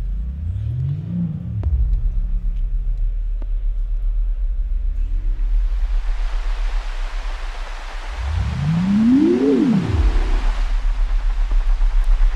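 Electronic sound effects played by an orchid wired to a Touché touch sensor as it is touched: a low drone with tones that glide up and down, and a hiss that sets in about halfway through, the orchid 'hissing' at being touched too strongly. The largest glide rises and falls back near the end.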